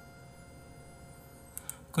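Quiet room tone with a faint steady hum, and a few soft clicks near the end.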